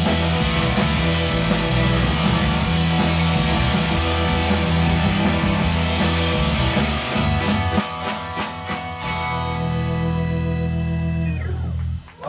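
Live garage-beat band of Farfisa organ, electric guitar, bass and drums playing the last bars of a song. The drumming stops about eight seconds in and a held chord rings on, then cuts off just before the end.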